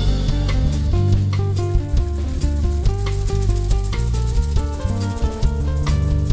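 A rock band playing an instrumental passage without singing: guitar lines over a bass guitar and a drum kit.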